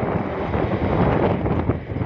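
Wind buffeting the microphone of a phone filming from a moving vehicle, a steady rushing rumble with road and vehicle noise beneath it.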